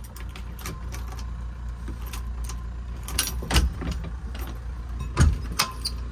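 Keys jangling and clicking in the lock of a metal-framed glass door as a key is tried and turned, with two louder knocks about three and a half and five seconds in, over a steady low rumble.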